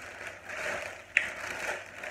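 A plastic courier mailer bag rustling and crinkling as it is handled and opened, with one sharp click or snap just past a second in.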